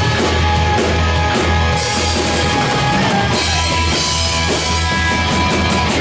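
Live rock band playing loudly and steadily: electric guitar, bass guitar and drum kit.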